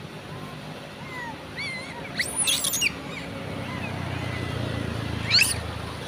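Long-tailed macaques giving short, high-pitched squeals, in a cluster about two seconds in and again near the end. Under them a low hum grows louder through the second half.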